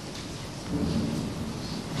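Soft, even rumbling noise in a hall, a little louder from just under a second in, with no clear voice or distinct event.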